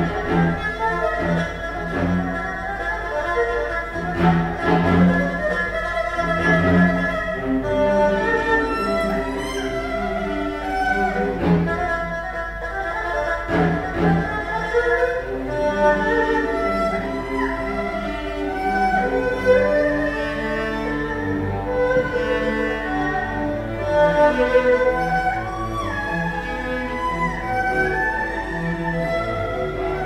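Erhu and a bowed-string ensemble of violins and lower strings playing contemporary chamber music: long held notes shifting over one another, with a few sharp accents.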